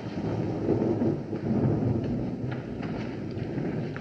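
A low rumbling noise that swells over the first second or two and slowly eases off, with a few faint knocks near the end.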